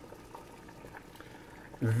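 Faint, steady bubbling of water boiling in a pot on the stove.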